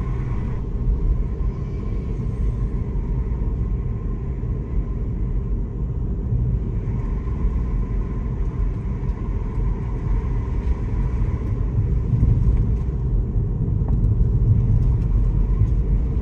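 Steady low rumble of a car being driven along a road, engine and tyre noise heard from inside the cabin, growing slightly louder near the end.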